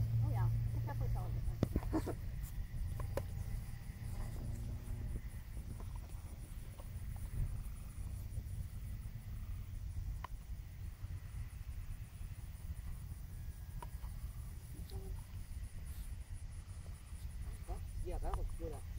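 Wind buffeting the microphone: a steady low rumble, with faint voices briefly in the first couple of seconds.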